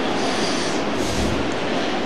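Steady background hiss and room noise, even and unchanging, with no voice.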